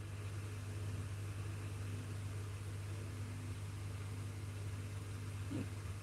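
Room tone: a steady low hum with a faint hiss, and no clear event.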